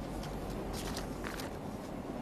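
Chalk writing on a blackboard: a few short scratching strokes over a steady low room hum and hiss.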